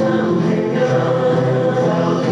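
A group of voices singing together in chorus, holding long notes.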